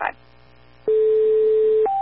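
Two-tone sequential fire paging tones over a dispatch radio channel. A steady lower tone starts a little under a second in and holds for about a second. It then steps up to a steady higher tone that holds on. This is the alert that calls a mutual-aid fire department to respond.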